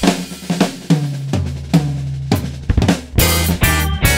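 Rock drum kit playing a break: snare, kick, toms and cymbal hits, with a low bass note held underneath from about a second and a half in.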